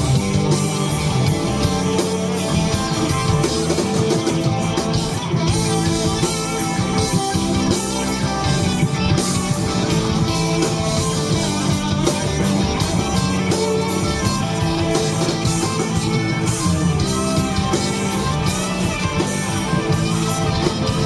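Southern rock band playing live: electric guitars, bass guitar and drum kit in a loud, steady instrumental passage with no singing, heard from the crowd.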